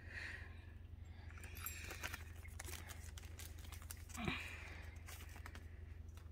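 Faint handling of small plastic toy parts and packaging: scattered light clicks and soft rustling, with one brief louder sound about four seconds in.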